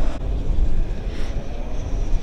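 Wind buffeting the microphone: a steady low rumble under a hiss, with a short drop in the higher sound just after the start.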